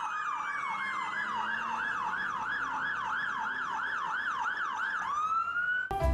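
Fire engine siren sounding in a fast yelp, sweeping up and down about three times a second. About five seconds in it changes to one slow rising tone.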